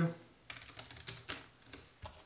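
Computer keyboard being typed on: a quick run of about half a dozen sharp keystrokes.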